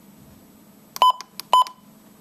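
Midland WR120 weather alert radio giving two short electronic key-press beeps about half a second apart as its front buttons are pressed.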